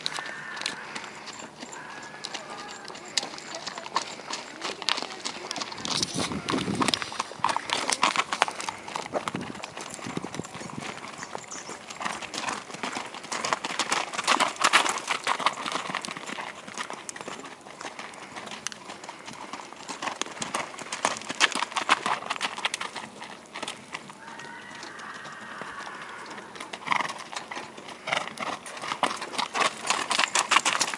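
Hoofbeats of a ridden sorrel Thoroughbred mare trotting and cantering on gravel, a quick run of sharp strikes on the stones that swells as she passes close and fades as she moves away.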